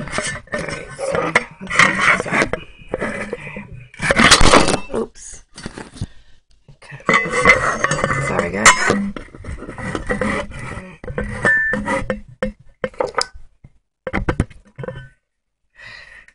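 Handling noise: irregular knocks and clinks of a glass candle jar and other small objects being moved and set down, with a loud rustle about four seconds in.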